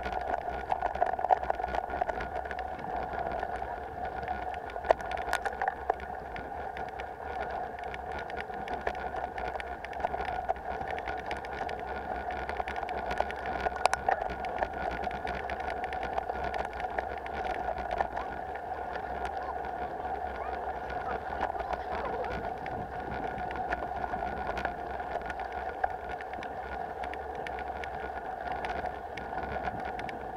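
Mountain bike rolling over a rough dirt trail, picked up by a bike-mounted camera: a steady drone with a low rumble, broken by frequent clicks, knocks and rattles as the bike bumps over stones.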